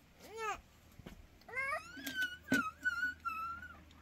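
Cat meowing: a short meow just after the start, then a longer drawn-out meow that rises and holds from about a second and a half in. A sharp click sounds partway through the long meow.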